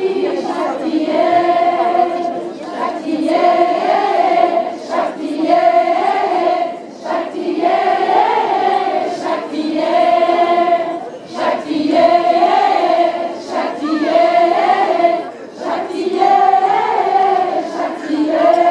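A crowd of mostly women singing together in unison, phrase after phrase with brief breaths between.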